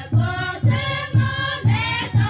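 Group of women singing a folk song in chorus over a steady low beat, about two beats a second.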